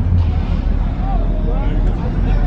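Faint voices talking in the background over a loud, steady low rumble.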